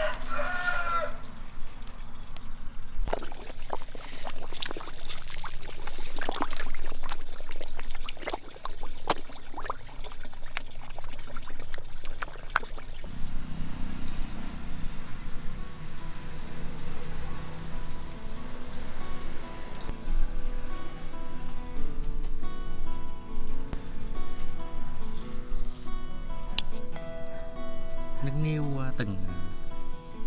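A rooster's crow trails off in the first second. Then a run of crisp crackling and rustling as leafy greens are handled in a plastic basket, and from about halfway through, background music with sustained notes.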